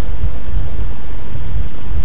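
A steady, loud low rumble with a hiss above it, with no speech.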